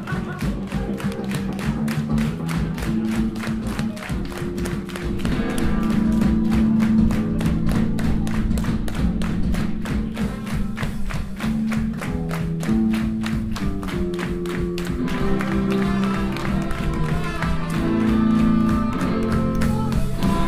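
Live ska-punk band playing loud, with a horn section of saxophones, trumpet and trombone holding long notes over electric guitar and a steady, driving drum beat.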